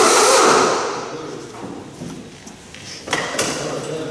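Handling noise as a fan and its viscous fan clutch are carried out of the engine bay, fading after the first second, then two short knocks about three seconds in.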